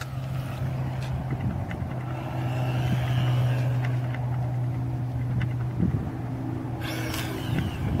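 Electric drive motor and three-blade propeller of a radio-controlled model boat under throttle: a steady hum with a faint higher whine that swells and fades midway. About six seconds in the hum breaks up, and near the end there is a short rush of churned water at the stern.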